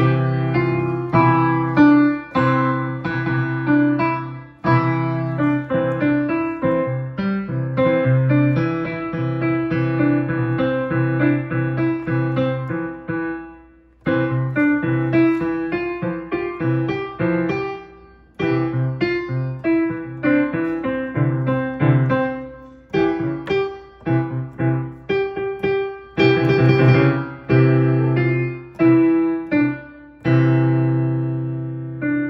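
A child playing a digital piano: a melody over repeated, held bass notes, played in phrases with short breaks about 14 and 18 seconds in.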